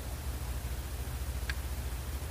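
Steady low hum with a hiss of background noise, and one faint short tick about one and a half seconds in.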